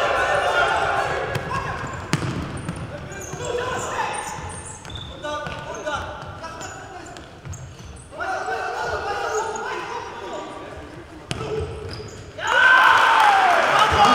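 Indoor futsal play in a sports hall: players shouting and calling to each other, with a couple of sharp ball strikes. About twelve seconds in, the voices rise suddenly into loud shouting.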